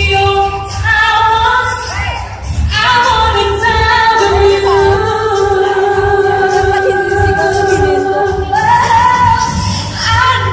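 Female pop singer singing live with instrumental accompaniment over a hall's PA, holding one long note through the middle.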